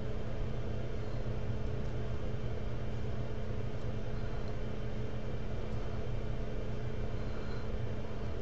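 Steady low hum and hiss of background room noise, even throughout, with no distinct clicks from the wire or pliers standing out.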